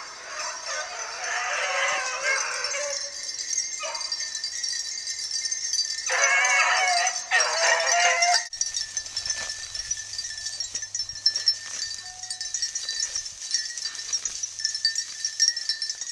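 Beagles baying as they run a rabbit's track, in two bouts: one at the start and one from about six to eight seconds in. A sudden break follows, and then only quieter, scattered sounds.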